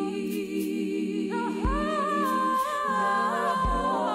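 Gospel song of layered, hummed vocal harmonies under a sustained sung melody line. A soft low beat falls about every two seconds.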